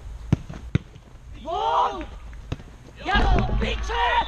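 Football being kicked, sharp thuds twice in the first second and once more a little past halfway, with players shouting loudly between the kicks.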